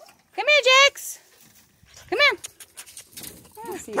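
A dog giving short, high-pitched barks: a quick double bark about half a second in, a single one about two seconds in, and another near the end.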